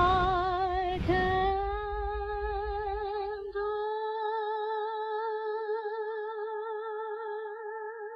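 A solo singing voice carries a short rising phrase into one long high note held with vibrato, which fades slowly. The low accompaniment underneath drops away about four seconds in.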